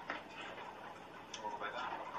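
Faint voices talking, with a few light ticks.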